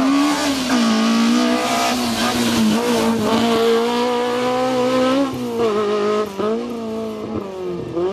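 Fiat Cinquecento autoslalom car's engine held at high revs, the pitch wavering up and down as the driver lifts and gets back on the throttle, with noticeable drops about five seconds in and again near six seconds.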